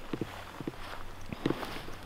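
Footsteps walking through tall grass: several soft, unevenly spaced footfalls with the brush of grass against the legs.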